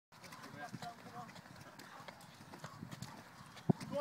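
Many people hopping up concrete steps, their feet landing in an irregular patter of short slaps and knocks, with one louder low thump near the end. Faint voices call in the background.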